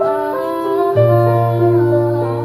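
Live acoustic music: a melody of short stepping notes over held tones, with a low bass note coming in about a second in.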